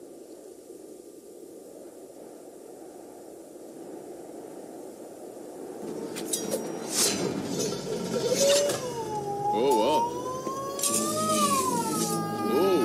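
Soundtrack of a 3D animated film: a low, quiet ambience for the first half. About six seconds in come sharp clinks and clicks, followed by a tone that slowly rises and falls like a siren, with wavering voice-like sounds under it.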